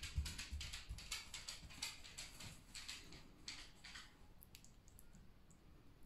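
Fingers patting and dabbing a mashed-avocado face mask onto the skin: faint, irregular soft pats, frequent for the first four seconds, then thinning to a few small ticks.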